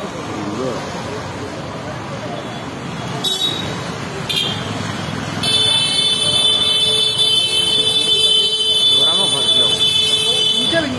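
Busy street sound of people talking with traffic behind. A couple of short high beeps come in the middle, and from about halfway through a loud, steady high-pitched tone like a horn or buzzer sets in and holds.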